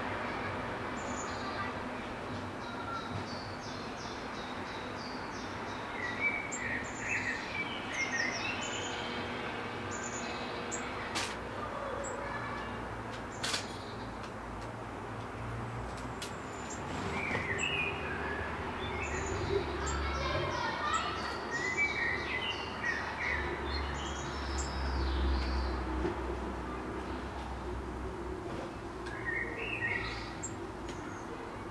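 Small songbirds chirping and singing, in busy spells of short high calls about a quarter of the way in and again past the middle, over a low rumble in the second half.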